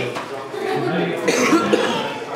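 Voices of people talking in a room, with a cough about one and a half seconds in.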